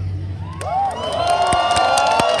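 Concert crowd cheering and shouting as a song ends: the band's music dies away at the start, and cheers with high, sliding shouts rise about half a second in.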